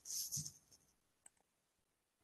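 A short breathy hiss at the start, then a single faint click a little past a second in, over the near-silent line of a video call.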